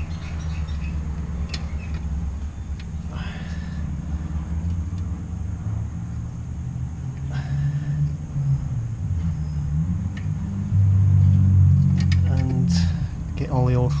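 A steady low rumble, growing louder in the second half, with a few faint clicks and scrapes from a spanner working a brake bleed nipple.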